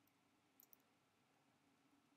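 Near silence: room tone, with a short cluster of faint clicks a little over half a second in, from computer keyboard keystrokes.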